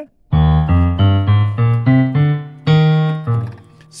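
Yamaha PSR-SX900 arranger keyboard playing a piano voice with the sustain off. It plays a run of about eight separate low notes that step upward like a scale, a beginner's scale in F sharp.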